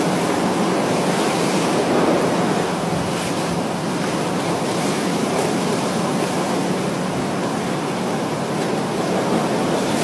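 Ocean surf: waves breaking and washing up the sand in a steady rush.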